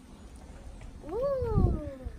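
A cat meowing once, about a second in: a single call that rises quickly and then falls away slowly, lasting under a second.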